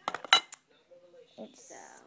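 Small hard makeup containers clinking and clattering as they are handled, a few sharp clicks in the first half second.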